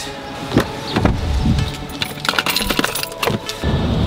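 Keys jingling amid a run of small clicks, knocks and rustles as someone handles keys and climbs into a car seat, with a sharp knock about half a second in.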